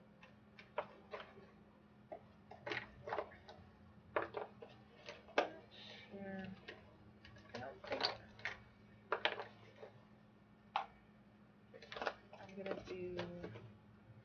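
Irregular clicks and light knocks of small objects being handled and moved about as makeup is rummaged through, with a few quiet murmured words.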